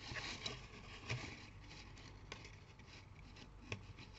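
Faint rustling and a few light clicks as red card stock and double-sided tape are handled while a paper box is assembled.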